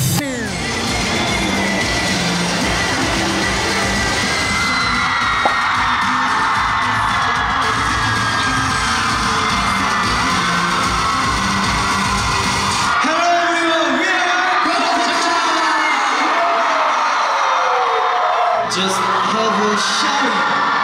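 Pop music with a steady beat, mixed with a crowd of fans screaming and cheering; about thirteen seconds in the music drops out, leaving the screaming and shouting voices.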